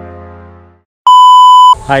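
Background music fading out, then after a short gap a single loud, steady electronic beep lasting under a second, followed at once by a man's voice.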